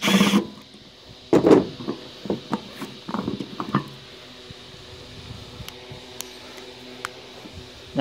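A cordless drill runs briefly, backing out the screws of a microwave's turntable motor. It is followed by a knock and a few sharp clicks as the small motor is pulled free of the sheet-metal oven floor and handled.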